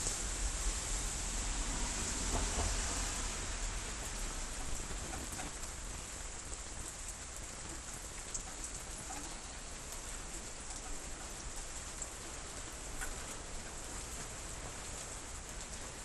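Steady rain falling, an even hiss with a low rumble beneath it, a little stronger in the first few seconds.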